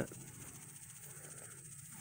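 Faint, steady high-pitched chorus of insects in a grass field, a fine rapid trill that carries on unbroken.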